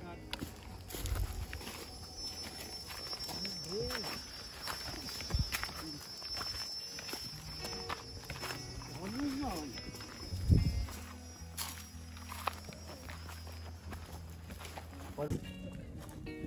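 Footsteps of several people walking up a rocky trail over dry leaves and stones, with brief scattered voices of the group.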